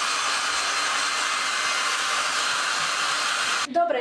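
Handheld hair dryer blowing steadily, switched off suddenly near the end.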